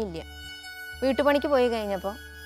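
A woman speaking over background music. The music holds a high, thin, sustained tone that is heard plainly in a pause of just under a second near the start.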